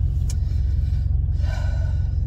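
Jeep Grand Cherokee WJ engine idling, a steady low rumble heard from inside the cabin.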